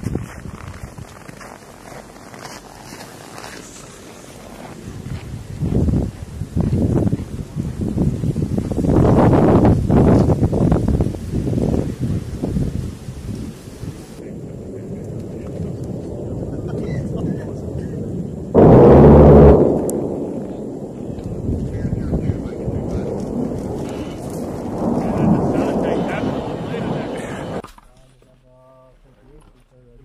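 Military jet aircraft rumbling over a training range, swelling and fading, with one very loud burst about a second long a little past the middle. The rumble cuts off sharply near the end.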